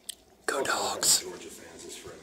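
A man whispering close to the microphone, starting about half a second in, with a sharp hiss about a second in.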